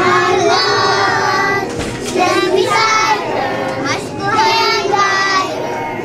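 A group of young children singing together in short phrases, with brief breaks between lines.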